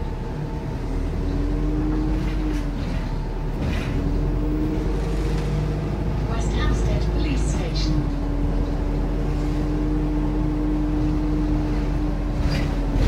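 Inside a Volvo B5LH hybrid double-decker bus on the move: a low drivetrain rumble with a steady pitched whine that cuts out and comes back a few times. Light rattles from the interior fittings come in briefly around the middle.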